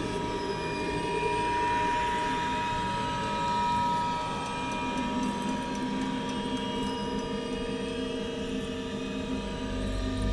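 Horror film score drone: several long held tones layered over a dense, low, churning texture, building tension. A deep bass rumble swells in near the end.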